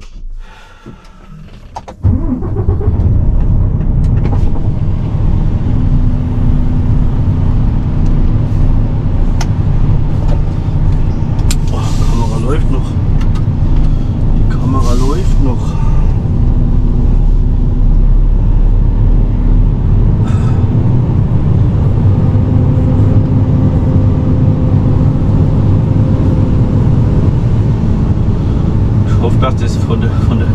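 Diesel engine of a Mercedes Actros SLT heavy-haulage truck running steadily, heard from inside the cab as a loud, even low drone that comes in suddenly about two seconds in.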